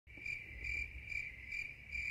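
Faint, high-pitched chirping trill that swells about twice a second.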